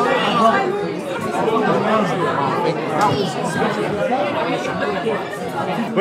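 Crowd chatter: many people talking at once in a large hall, their voices overlapping into a steady hubbub.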